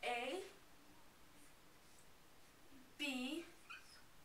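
Dry-erase marker squeaking on a whiteboard as letters are written: two short squeaks that bend in pitch, one at the start and one about three seconds in.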